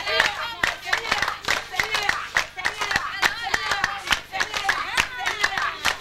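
A group of women clapping their hands in a steady rhythm while singing.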